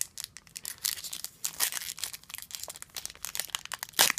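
Foil booster-pack wrapper being torn open and crinkled by hand, a dense run of quick crackles and rips.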